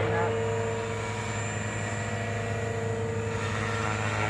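JR Forza 450 electric RC helicopter hovering inverted while it pirouettes: a steady hum from its rotor and motor, with a thin high whine above it.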